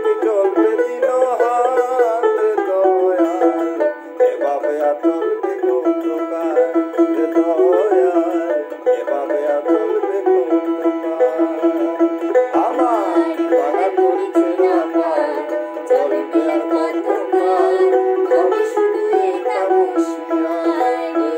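Dotara, a long-necked plucked folk lute, playing a continuous melodic run of a Bengali folk tune.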